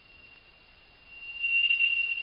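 A moment of near silence, then a steady high-pitched electronic tone that swells up about a second in and holds.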